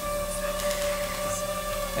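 Camera drone's motors and propellers flying nearby: a steady, even whine that holds one pitch.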